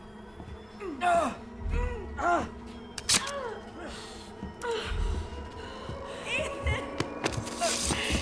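Short pained gasps and groans from a man and a woman over a tense, low film score, with a sharp click about three seconds in.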